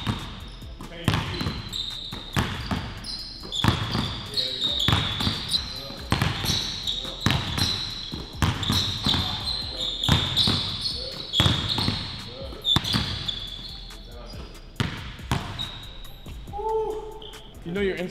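Basketballs being dribbled on a hardwood gym floor: repeated sharp bounces, about one or two a second with short pauses, echoing in a large hall.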